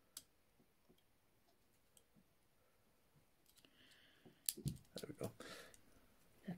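Steel handcuff lock being worked with a small pick tool: a few faint isolated clicks, then from about three and a half seconds in a run of louder sharp clicks and metallic rattles. It is typical of the cuff's double lock being knocked off.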